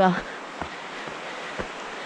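Two soft footsteps of a hiker walking on a dirt trail, about a second apart, over a steady rushing hiss.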